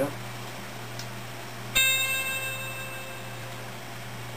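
A single bell-like ringing note, struck about a second and three-quarters in and fading out over about two seconds, over a steady low hum.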